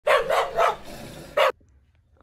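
A dog barking: three quick barks, then a fourth after a short pause, ending about one and a half seconds in.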